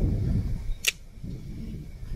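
Low, uneven rumble of wind on the microphone, louder in the first second, with one sharp click just under a second in.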